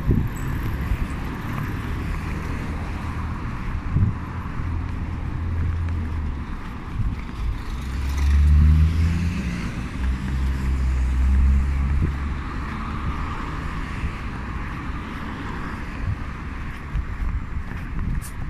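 City road traffic: cars passing along a street, a low engine hum swelling and fading, loudest about eight to twelve seconds in.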